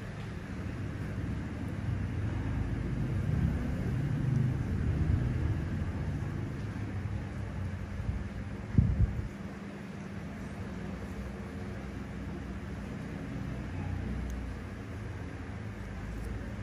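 Low steady background rumble with a faint hum, and one dull thump about halfway through.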